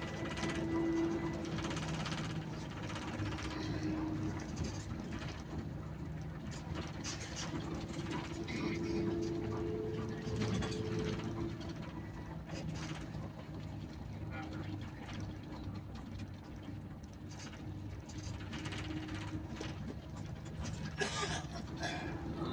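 Steady engine drone and road noise heard from inside a moving vehicle at cruising speed.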